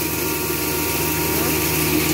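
Electric hammer-mill feed grinder milling dried corn kernels: a steady motor hum under a continuous hiss of grain being ground.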